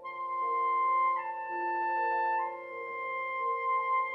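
Soprano saxophone entering with long, held high notes over a piano accompaniment. It steps down a note about a second in and back up a little after two seconds.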